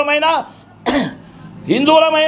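A man speaking, his words broken by a single short cough about a second in.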